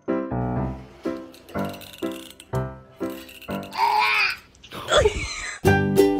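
Background music with a steady beat of pitched, piano-like notes. About four seconds in, a short wavering cry and then a falling sound cut across it.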